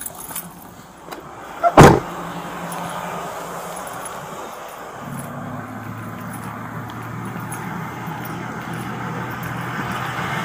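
A car door shutting with one loud thump about two seconds in, over a steady outdoor hiss. From about halfway a low steady hum comes in: a pickup truck's engine idling.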